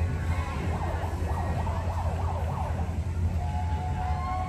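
A siren-like wail, its pitch rising and falling quickly for a couple of seconds, over a steady low rumble.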